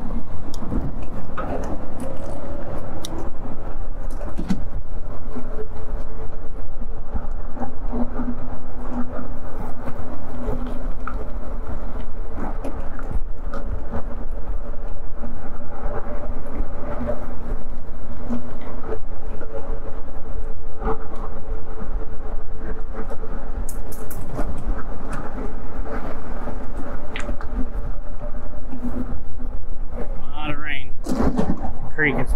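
An e-bike riding along a paved trail: steady wind rumble on the microphone over tyre noise, with a faint steady hum from the motor drive and a few light clicks.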